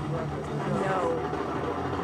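Indistinct voices talking in the background over a steady low hum.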